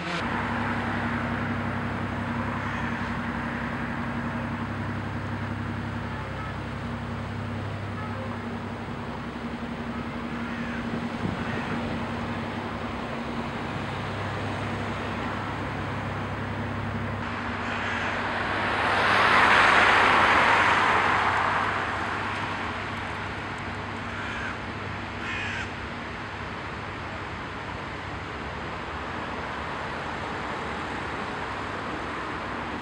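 Outdoor ambience: a steady low hum through the first half, then a passing engine that swells and fades about twenty seconds in, followed by a few short calls.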